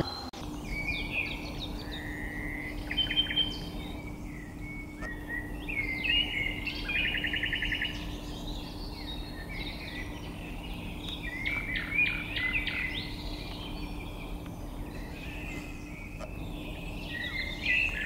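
Several songbirds singing, short varied whistled phrases and chirps overlapping one another, with a fast trill about seven seconds in. A steady low hum runs underneath.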